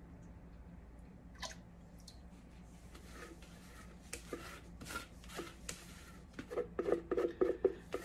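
Lye solution poured from a plastic pitcher into a stainless steel pot of oils: faint, intermittent trickling and splashing of liquid, a little busier and louder near the end.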